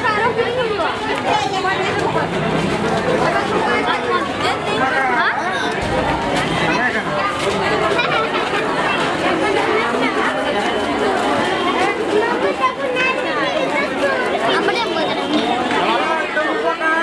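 Crowd chatter: many people talking at once, steadily, with no single voice standing out.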